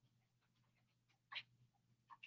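Near silence: faint room tone with a low steady hum, broken once a little past halfway by a short faint sound.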